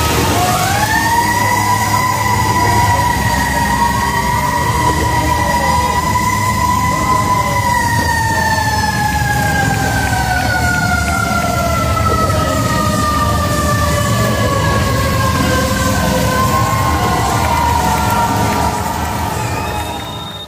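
A siren winds up quickly to a steady wail, holds it for about seven seconds, then slowly winds down in pitch over the next eight seconds or so.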